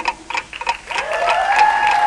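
Light applause from an audience over a fast, regular ticking of a clock sound effect, about four ticks a second. About a second in, a rising synth tone swells in.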